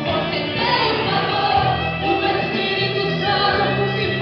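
Live Christian gospel song: a woman singing into a microphone through the hall's PA over continuous accompaniment with sustained bass notes.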